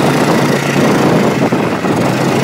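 Small off-road vehicle's engine running steadily as it drives along a rough dirt track, a constant hum with noise over it.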